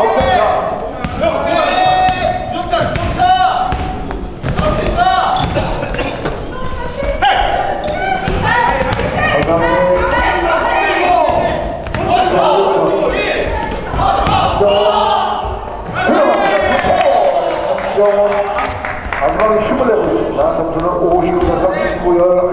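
Basketball dribbled on a hardwood gym floor, its bounces ringing in the hall, with players' and onlookers' voices shouting throughout.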